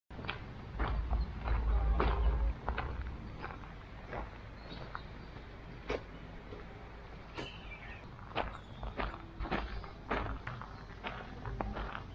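Footsteps of someone walking over ground strewn with dry leaves, irregular steps about one or two a second, with a low rumble in the first couple of seconds.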